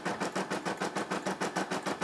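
Brother SE600 embroidery machine stitching, its needle running at a fast, even rhythm of about eight to ten strokes a second as it sews the border around the design.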